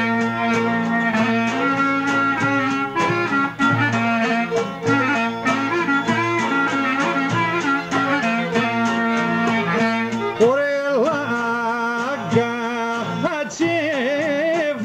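Greek folk (demotiko) band playing: a clarinet carries the ornamented melody over violin and laouto, with a trambouka hand drum keeping a steady beat. About ten seconds in, the melody turns to wide sliding phrases.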